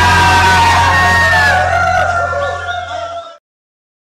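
A band's final chord held and ringing out, with a deep sustained bass note under accordion and guitars and whoops and shouts over it. It fades, then cuts off suddenly to silence about three and a half seconds in.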